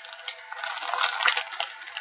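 Condom packets crinkling and crackling as they are handled and picked up, an irregular run of small crackles.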